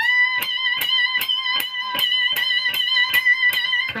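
Electric guitar holding a full string bend high on the neck, one sustained note re-picked in an even rhythm about two and a half times a second, its pitch wavering slightly.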